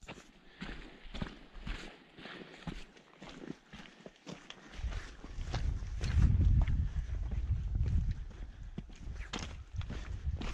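Footsteps of a hiker crunching on a rocky, stony trail, irregular steps on loose stones. About halfway through, a loud low rumble of wind on the microphone joins in.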